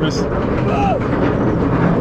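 Griffon dive coaster train being hauled up its chain lift hill: a steady mechanical rumble and clatter from the lift.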